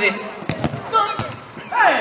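A football being kicked and played during a five-a-side match: a few sharp knocks of boot on ball, about half a second in and again just after a second, with faint players' voices.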